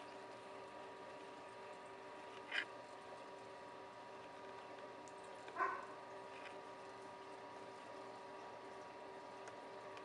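Quiet indoor room tone with a faint steady hum. Two brief faint sounds stand out, one about two and a half seconds in and a slightly longer, pitched one about five and a half seconds in.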